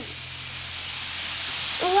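Remote-control M&M's toy train running on its track: a steady hiss of motor and wheels on the rails over a faint low hum, growing gradually louder as the train approaches.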